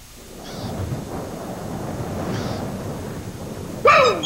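Wind rushing with a low rumble, swelling over the first second and then blowing steadily. Near the end comes a short squeaky creak from a rope pulley over a well.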